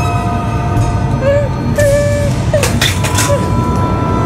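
A woman wailing and sobbing in distress, her crying rising and falling in short pitched cries, with a few noisy gasping breaths past the middle, over a sustained drone of dramatic background music.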